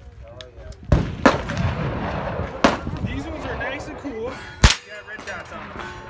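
.22 rifle shots: four sharp reports at uneven intervals, the last and loudest about two-thirds of the way through.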